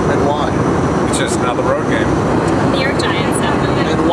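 Steady cabin noise of an airliner in flight, an even rushing drone with voices talking faintly over it.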